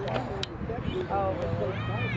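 Overlapping voices of spectators and young players at an outdoor youth soccer game, with no clear words, and a high-pitched child's call near the end.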